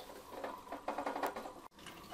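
Handling noise: a quick, irregular run of light clicks and rustles as plastic parts of a water purifier and clothing are moved about, with a brief gap near the end.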